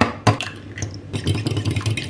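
An egg cracked open over a ceramic bowl, then a fork beating the egg in the bowl, clicking quickly against the sides.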